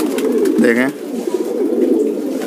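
A flock of domestic pigeons cooing together in a dense, overlapping chorus. A short voice cuts in briefly under a second in.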